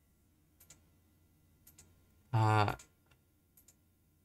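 A few light clicks, mostly in pairs, from a computer keyboard or mouse at the desk. About halfway through there is a brief voiced sound, a short hum or syllable.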